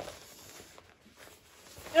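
Faint rustling of the backpack's nylon fabric as the roll-top collar is handled and opened, with a few soft ticks. A voice starts loudly right at the end.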